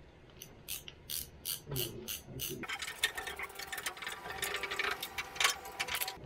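Ratcheting screwdriver clicking as screws are undone: separate clicks about three a second at first, then a quicker, denser run of ratcheting from about halfway on.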